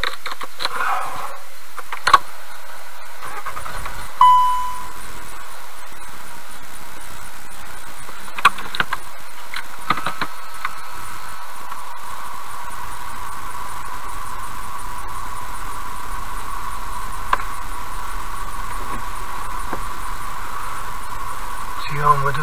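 A car engine heard from inside the cabin: a short beep about four seconds in, after which a low steady idle sets in and keeps running. A few sharp clicks are heard before and just after the start.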